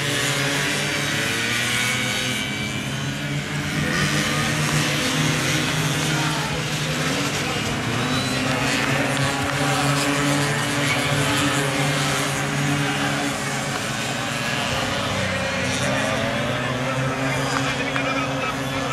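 Several small racing scooter engines running hard together through the corners, several pitches overlapping and rising and falling as the riders accelerate and back off.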